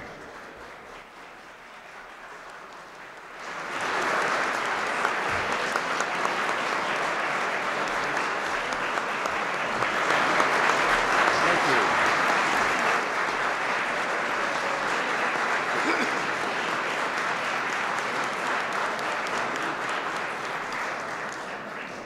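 Audience applauding: the clapping starts about three and a half seconds in, holds steady, and eases off near the end.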